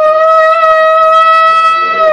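A shofar (ram's horn) blown in one long, loud, steady note.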